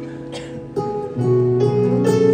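Live instrumental opening of a slow ballad: guitar plucking slow notes over sustained chords, the music swelling fuller and louder about a second in.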